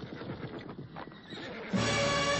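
Horse hooves clattering in a quick, irregular run with a neigh among them, then music comes in loudly near the end.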